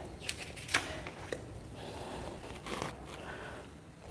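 A few soft, sharp clicks in the first second and a half, then faint rustling over quiet room tone.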